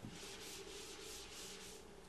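Whiteboard eraser rubbing marker writing off a whiteboard in a faint, quick run of back-and-forth strokes, about five a second.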